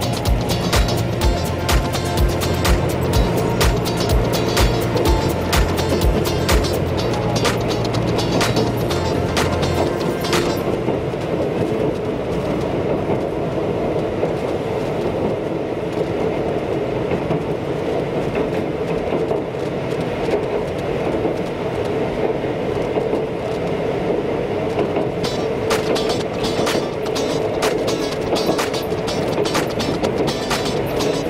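Oigawa Railway train running, wheels clicking over rail joints in a quick regular run for the first ten seconds or so, then a steadier rolling rumble, with the clicking coming back near the end. Music plays along throughout.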